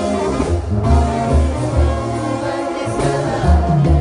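Live banda sinaloense music with a lead singer, a deep bass line pulsing on the beat under brass and voice, heard from within the concert crowd.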